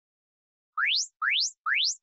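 Electronic workout-timer signal: three quick rising sweeps, each gliding from low to high pitch, about half a second apart and starting about three quarters of a second in. It is the cue that the rest is over and a work interval is starting.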